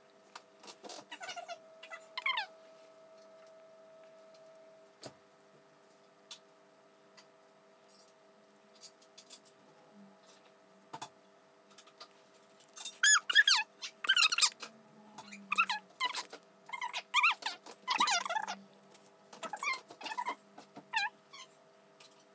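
A baby's high squealing vocalisations: a few short calls about a second in, then a louder run of short, pitch-bending squeals in the second half.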